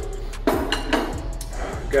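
Background music, with a ceramic plate set down and clinking on a wooden table about half a second in, then light handling of dishes and cutlery.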